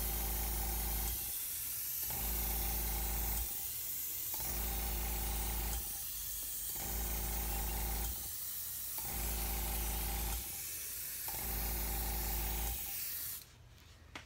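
Double-action airbrush spraying white base-coat paint at about 40 PSI: a hiss of air and paint with a low hum, in about six bursts a little over a second long with short breaks, stopping shortly before the end.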